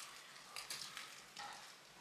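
Quiet, with faint rustling and light crackling and a few soft ticks about a third of the way in, near the middle and again a little later.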